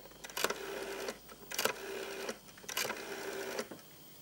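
Rotary telephone dial being wound and released three times. Each release starts with a click and gives a short whirr of under a second as the dial spins back.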